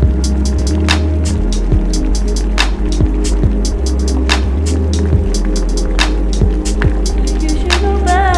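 Instrumental electronic music: a deep, sustained bass line that changes note every second or so, under a beat of kick drums and sharp percussion hits, with no vocals.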